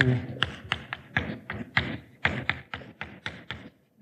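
Chalk on a blackboard while a formula is written: a quick, irregular series of sharp taps and short scrapes, about three or four a second.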